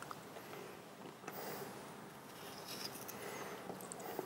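Faint handling sounds at a kitchen counter as a cucumber and vegetable peeler are picked up: a light click about a second in, then soft scraping and rustling.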